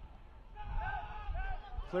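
Distant shouts from players on a soccer pitch over a low rumble of open-air field ambience. The shouts rise and fall in short calls from about half a second in.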